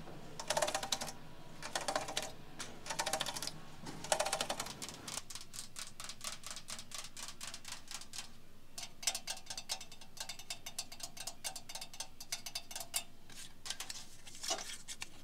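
Long fingernails raked across the ribbed metal of an antique washboard in four strokes about a second apart, each a rapid clicking rasp. After a quieter pause, a long run of quick, sharp fingernail clicks follows near the end.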